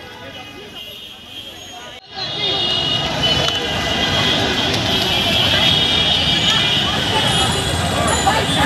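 Crowd of many voices shouting over one another in a street with traffic, suddenly much louder about two seconds in.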